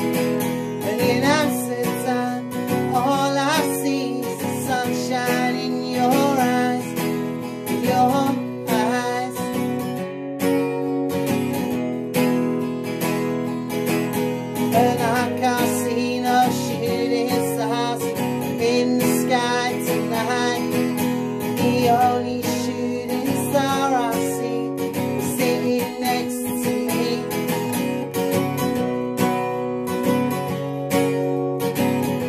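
A man singing over a strummed steel-string acoustic guitar, with stretches where the guitar plays on alone between sung lines.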